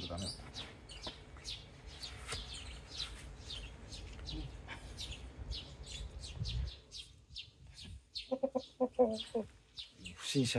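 A rooster gives a short run of low clucks about eight seconds in. Before that, small birds chirp over and over, high and thin, over a low wind rumble on the microphone.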